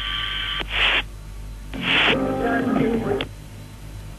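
Launch-control radio link during a Soyuz pre-launch countdown: bursts of static and a short garbled transmission over a steady hum, thin and cut off in pitch like a radio channel.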